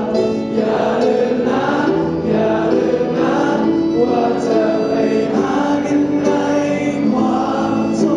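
A large group of voices singing a hymn together as a choir, held notes flowing from one to the next, with a small band including violin accompanying.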